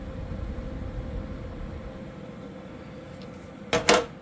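Steady hum of a PC's fans and AIO liquid-cooler pump running under a stress-test load, with a low rumble in the first couple of seconds. Two quick knocks near the end are the loudest sounds.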